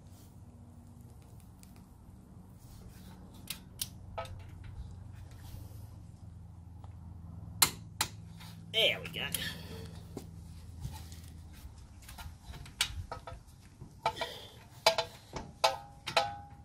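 Scattered metallic clicks and clinks of a wrench on bolts in a pickup's front suspension, over a low steady hum; the clicks bunch up near the end.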